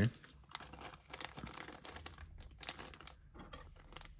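Clear plastic blister packaging crinkling and crackling in the hands as it is opened, a run of small irregular crackles.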